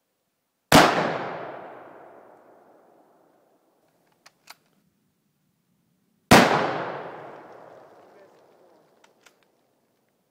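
Two shots from a Mosin-Nagant rifle chambered in 7.62×54R, about five and a half seconds apart. Each is a sharp crack with a long echoing tail that dies away over two to three seconds. A pair of faint clicks comes a few seconds after each shot.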